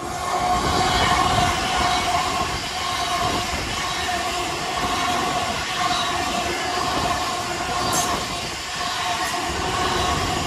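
GWR Hitachi Intercity Express Train passing at speed: a steady rush of wheels and air with a steady whine over it. A short sharp click comes about eight seconds in.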